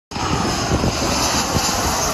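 Turbofan engines of a Boeing 737 airliner passing low overhead on landing approach: a loud, steady rushing noise.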